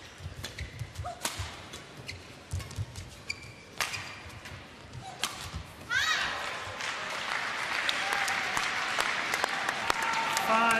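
Badminton rally: sharp racket strikes on the shuttlecock come every half second or so, with footfalls on the court. About six seconds in, the rally ends and the arena crowd breaks into shouting, cheering and applause that carries on through the rest.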